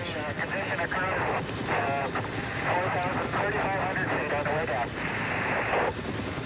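Thin, muffled radio voice transmissions from the splashdown recovery communications, with short bursts of speech cut off above the middle range, over a steady background hum and hiss.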